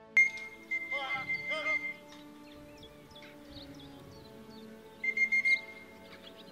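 Background music with two bursts of high electronic beeping, one near the start lasting about two seconds and a shorter one about five seconds in. These are typical of an electronic pigeon-clocking system registering birds arriving at the loft.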